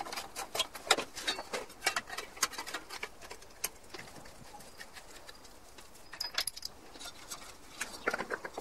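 Clicks and clinks of a screwdriver and metal engine parts being handled and fitted: a quick run of sharp clicks in the first half, sparser later.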